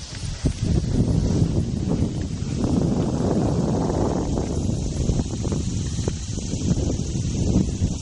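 Irish Sport Horse galloping on turf: dull, irregular hoofbeats over a steady low rumble.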